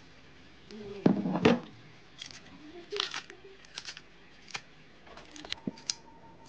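Green bananas being peeled by hand in a bowl of water: the skins tearing and snapping, with a louder rustling burst about a second in and then a run of short sharp clicks and taps.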